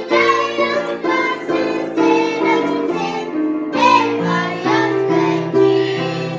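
Young girls singing a song together, accompanied on a grand piano.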